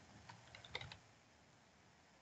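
Faint computer keyboard typing: a handful of light keystrokes in the first second, then near silence.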